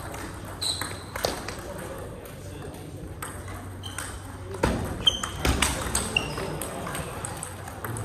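Table tennis balls clicking off bats and tables at an irregular pace, the sharp knocks of a rally with short high pings, loudest in a quick run of hits in the middle, over the background clicks of play at other tables.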